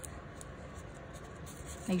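Faint rustling of paper cutouts being pressed and smoothed down by hand onto double-sided tape on watercolour paper.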